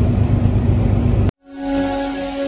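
Steady low rumble of an idling truck engine heard inside the cab, which cuts off abruptly a little past halfway; music with a held low note then fades in.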